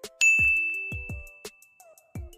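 A single bright ding that rings on and fades over about a second, over a quiet background beat with deep drum hits and short notes.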